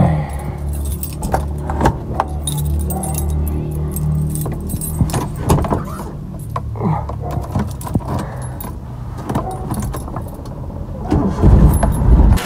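A bunch of car keys jangling and clicking as a hand works at the ignition under the steering column, over the steady low hum of the car's engine running.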